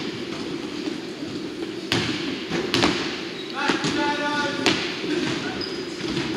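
A basketball bounced on a hardwood court by a player at the free-throw line, three sharp thuds spread over a few seconds, echoing in a large hall, with voices murmuring in the background.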